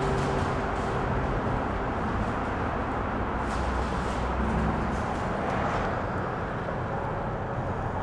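Steady outdoor background noise: an even hiss over a low rumble, with no single event standing out.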